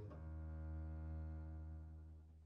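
A double bass bowing one long low note that starts right at the beginning, is held steadily and begins to fade near the end.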